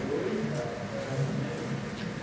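A woman's soft, low-pitched hum in several short drawn-out stretches.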